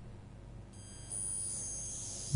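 Faint, steady high-pitched tones, several held together like a chime or synth pad, come in about a second into a pause in the talk and hold on.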